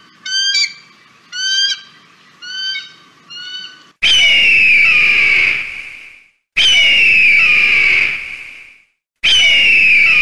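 Bird-of-prey calls: about five bursts of short, high chittering calls in the first four seconds, then three long high screams, each sliding down at the start and about two seconds long, coming roughly every two and a half seconds.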